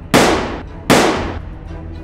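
Two gunshot sound effects, one just after the start and one just under a second later, each a sharp crack that trails off over about half a second.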